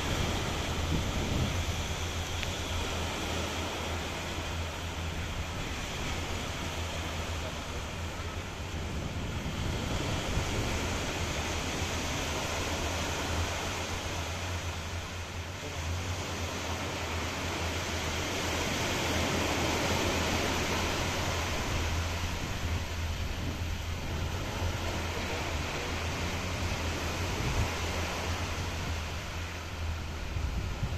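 Small waves washing onto a sandy beach in a steady wash of surf that swells gently now and then, over a low rumble of wind on the microphone.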